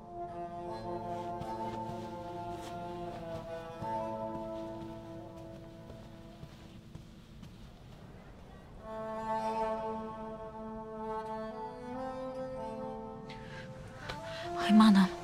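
Slow background drama score of long held string chords. It fades down in the middle and swells again about nine seconds in.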